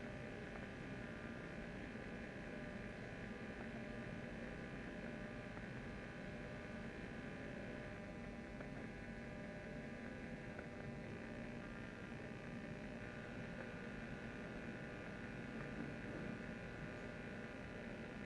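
Faint, steady electrical hum and buzz on the audio line of a microphone that is not working properly, over quiet room noise.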